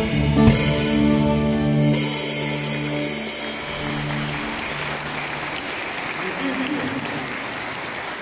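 The final chord of a song is held and fades out over about four seconds, with a single hit about half a second in. Audience applause swells up under it and carries on after the music has died away.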